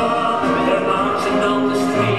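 A recorded song: a group of voices singing together over a brass and reed band accompaniment.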